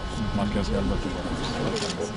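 People talking, several voices overlapping in a crowd.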